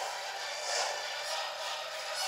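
Steady rushing noise from a film trailer's soundtrack, played through a portable DVD player's small speaker, with no low end.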